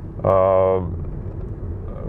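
A man's drawn-out hesitation sound, held for about half a second, then the low steady rumble of a moving car heard from inside the cabin.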